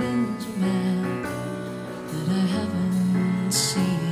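Live song: piano accompanying a woman singing long held notes that slide between pitches, with a short hiss near the end.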